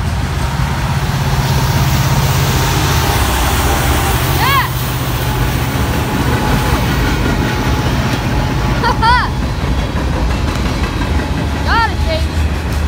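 Freight train cars rolling past close by, a steady loud rumble of steel wheels on the rails. Three short, high squeals that rise and fall in pitch cut through it, about four and a half seconds in, around nine seconds, and near the end.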